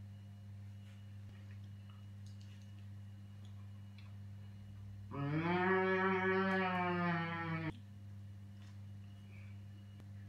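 A boy humming one long closed-mouth "mmm" of enjoyment while chewing a mouthful of bread, starting about five seconds in, rising slightly in pitch and then holding for about two and a half seconds before stopping abruptly. A faint steady electrical hum lies underneath.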